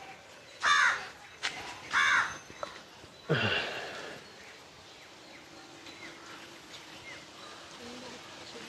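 A crow cawing three times, short calls about a second and a half apart, then it falls quiet.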